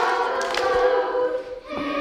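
A group of children singing together, with a short break about a second and a half in before the next phrase starts.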